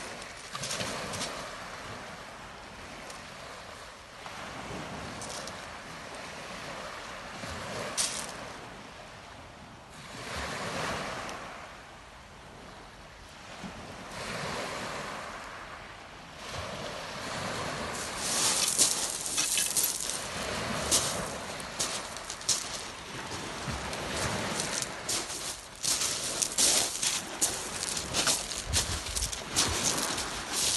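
Waves washing in on a shingle beach, with wind on the microphone. From about two thirds of the way through, loud crunching footsteps on the pebbles take over.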